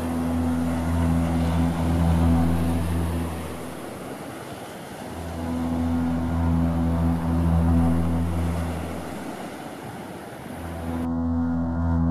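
A deep droning tone in three long swells, each rising and fading over about four seconds, as in ambient background music. It plays over a steady hiss that stops abruptly about a second before the end.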